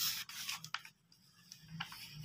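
Paper pages of a hardbound book being turned by hand: a rustling sweep of paper at the start, and a second, softer rustle near the end.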